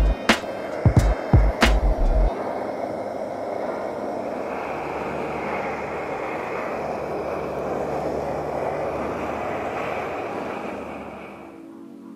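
Steady roar of an MSR XGK liquid-fuel stove burner running at full flame, over background music. It fades out near the end, and a few sharp knocks come in the first two seconds.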